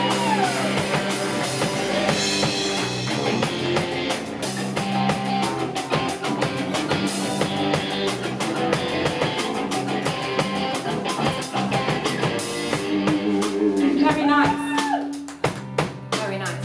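Live band playing: an electric bass guitar carries a short feature of steady low notes, over a drum kit keeping the beat and an acoustic guitar.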